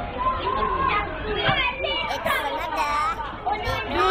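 Many overlapping voices chattering and calling out at once, high-pitched like children at play, with no single voice standing out.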